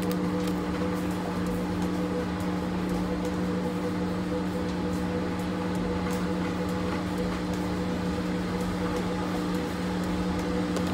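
Steady low mechanical hum of a running room appliance, unchanging throughout, with a few faint clicks over it.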